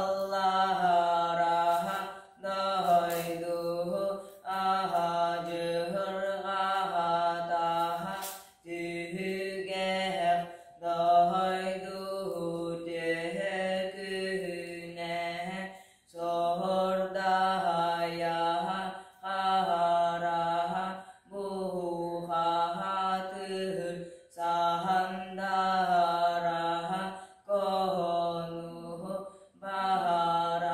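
A boy singing Yakut toyuk solo and unaccompanied, a chant-like song of long held phrases of two to three seconds each, with short breaths between them.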